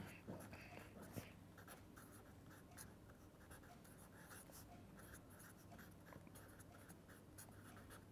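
Faint scratching of a pen writing on paper: a run of short, irregular strokes as a word is written out.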